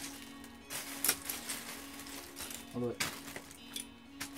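Loose plastic Lego bricks clattering and clicking as hands sift through a bag of bulk pieces, in short rattles about a second in and again near the end.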